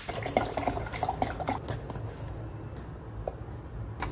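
A metal spoon stirring pre-workout powder into water in a plastic blender cup: liquid sloshing with small, irregular clinks and taps.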